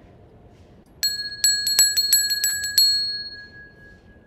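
Brass hand bell shaken, its clapper striking in a quick run of about ten strokes over two seconds from about a second in. A clear, high ringing tone is left fading away.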